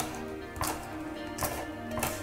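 Kitchen knife chopping a red hot pepper on a wooden cutting board: a few separate knocks of the blade on the board, under a second apart, over soft background music.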